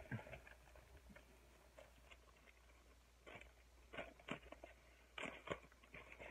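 Mostly quiet, with a few faint snips and crinkles from scissors cutting open a small plastic package, starting about three seconds in.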